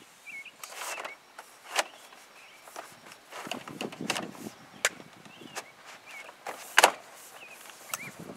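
Dutch lap vinyl siding panel being worked and locked into place against the wall: a series of sharp plastic clicks and snaps with some rustling, the loudest snap near the end.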